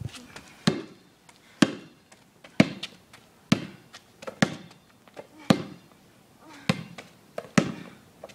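A basketball bouncing on an asphalt driveway as it is dribbled: eight sharp slaps about a second apart, each with a short hollow ring from the ball.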